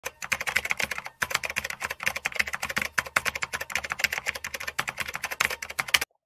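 Fast typing on a computer keyboard: a dense stream of key clicks with a brief pause about a second in.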